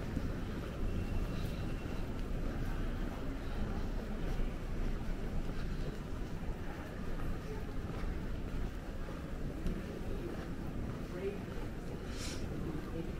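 Airport terminal ambience while walking: a steady low rumble with a background murmur of voices.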